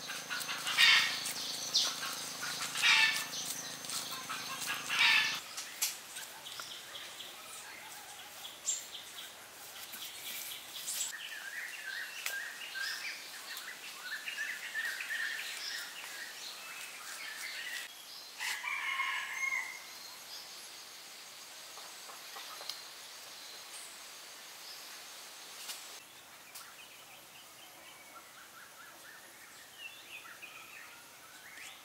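Birds calling and chirping, the calls busiest in the middle stretch and fading toward the end. Three louder, sharp sounds come in the first five seconds.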